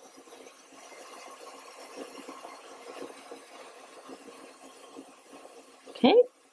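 SUNCOO professional ozone facial steamer putting out steam: a steady, faint hiss with small irregular pops from the water boiling inside it.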